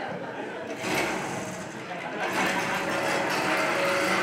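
Small portable petrol generator starting up and running, getting louder through the second half, with voices over it.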